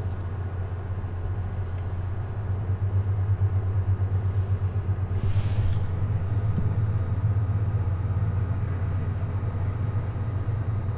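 A steady low hum with a rumble running throughout, and a brief hiss a little after five seconds in.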